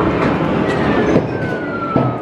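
Claw machine's claw lowering on its cable, with a thin motor whine that slowly falls in pitch, over loud, busy arcade noise.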